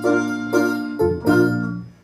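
Live small band playing an instrumental passage: keyboard chords with plucked ukuleles and bass, the chord struck afresh about four times. The sound dies away near the end.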